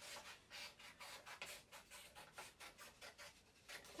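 Scissors cutting a thin strip from a sheet of paper: a faint, quick run of snips, several a second.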